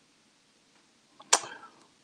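A single sharp knock a little over a second in, preceded by a small click and trailing off briefly, against faint room noise.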